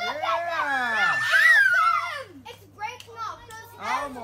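Excited shouting from several high-pitched voices, with long rising and falling cries in the first half and shorter broken calls after, over a faint steady low hum.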